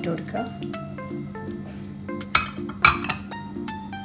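Two sharp clinks about half a second apart, a glass bowl knocking against the pressure cooker while chopped tomatoes are tipped in, over steady background music.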